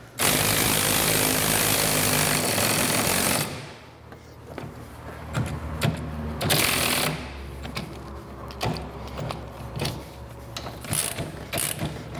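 A power driver turning the scissor jack's screw to raise the scooter's frame off the engine: one loud continuous run for about three and a half seconds, then quieter short bursts and clicks.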